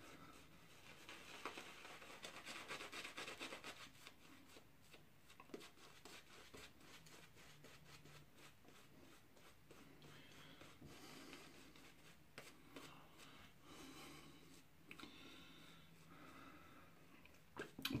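Shaving brush swirling lather on a face: a faint, soft rubbing and swishing, a little louder a couple of seconds in.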